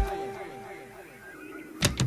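Breakdown in a 1990s euro house dance track: the drums and bass cut out, leaving a fading echo of repeated falling synth sweeps. The beat comes back in near the end.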